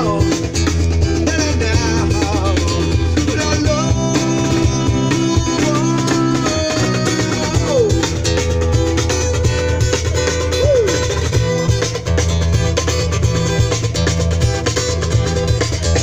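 Two street musicians playing live: guitar to the fore over steady, sustained low bass notes.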